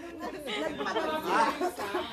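Chatter: several people talking over one another, with no other sound standing out.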